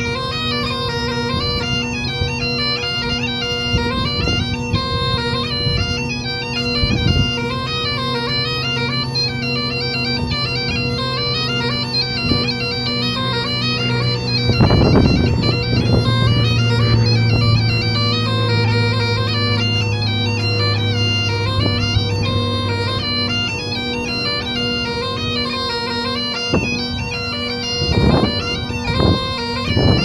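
Great Highland bagpipes playing a tune: steady drones under a heavily ornamented chanter melody. Low rumbles of wind on the microphone break in about halfway through and again near the end.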